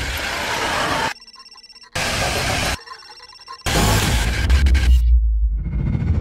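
Film-trailer sound design: loud bursts of harsh static noise cut sharply against short stretches of thin, high electronic tones, twice over. Then comes a loud burst with a deep rumble underneath, which cuts off abruptly about five seconds in before the sound swells back near the end.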